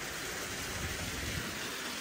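Steady rush of running water with no distinct splashes: water pouring from the pond's wall spouts into the pond.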